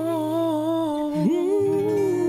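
Live pop singing: a voice holds a long, slightly wavering note, slides up a little after a second and holds the next note, over a low sustained backing accompaniment.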